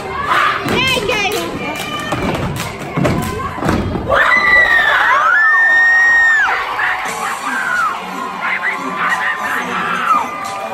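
An audience cheering and screaming at a step team's routine, with the team's stomps and claps in the first few seconds. The loudest stretch is about four to six and a half seconds in, with long high-pitched screams.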